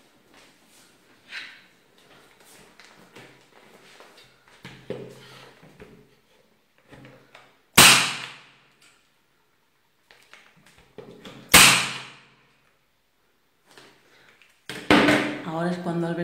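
Practyl electric staple gun firing twice, two sharp shots about three and a half seconds apart, driving staples through upholstery fabric into a wooden chair seat board.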